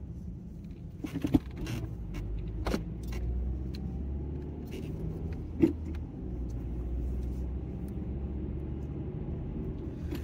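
Steady low rumble of a car heard from inside its cabin, with a few short clicks and knocks about a second in, near three seconds and near six seconds.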